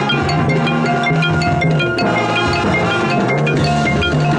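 Marching band playing continuously, with mallet percussion ringing over held notes and a moving bass line.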